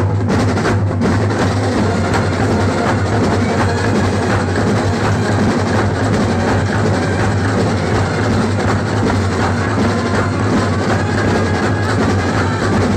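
Kerala band set playing live: many side drums and bass drums beating fast with brass horns, loud and dense, over a steady low held note.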